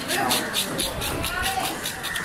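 A knife working through a giant trevally's belly in short repeated scraping strokes, several a second, with high, gliding voice-like calls over the top.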